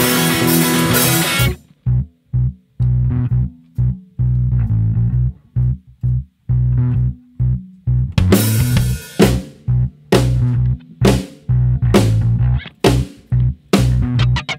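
Live rock trio of electric guitar, electric bass and drum kit playing an instrumental passage. The full band cuts off suddenly about a second and a half in, leaving short, choppy bass-guitar notes with gaps between them. About eight seconds in the whole band comes back in with stop-start hits, each accented by a cymbal crash.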